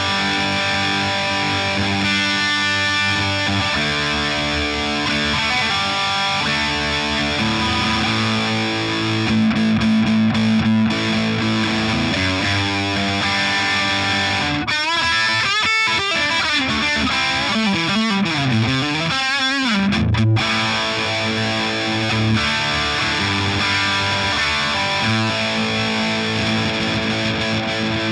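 Electric guitar with humbucker pickups played through heavy distortion, giving the thick, heavy tone that humbuckers are known for. Sustained chords and riffs, with bent notes and wide vibrato in the middle.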